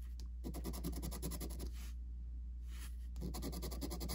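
A coin scratching the coating off a paper scratch-off lottery ticket in quick, rapid strokes, with a brief pause about two seconds in.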